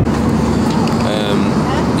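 Steady drone of an airliner's engines heard inside the passenger cabin, with a low hum running under it, and voices talking briefly about a second in.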